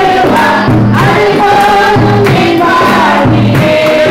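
Three women singing a gospel worship song together into handheld microphones, over an accompaniment with a steady, repeating low beat.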